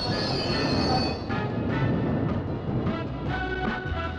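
London Underground train running, with a high wheel squeal that stops about a second in, under background music with a steady rhythm.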